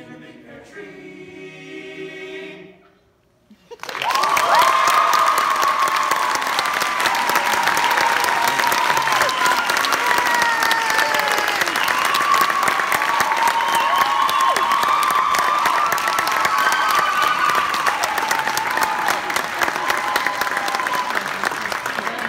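An a cappella boys' vocal group holds a final sung chord for about three seconds. After a brief pause, the audience breaks into loud applause with cheering and whoops, which carries on steadily.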